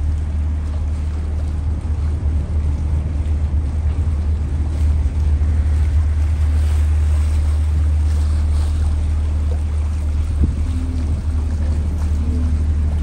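Steady low drone of a passenger motor ship's engine heard from on board, with a rush of water and wind over it. A single short knock sounds about ten and a half seconds in.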